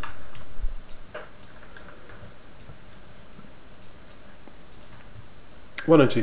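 Scattered light clicks of a computer mouse and keyboard, about a dozen spread irregularly over several seconds, over a faint steady hiss.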